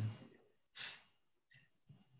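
A man breathing close to a video-call microphone: one short, breathy exhale about a second in, followed by two fainter breath noises.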